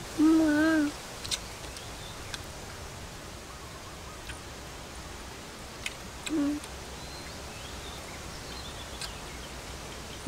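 A short hummed "mm" from a person eating, about a second long at the start and again briefly just past six seconds. A few small clicks sound in between over a faint steady background.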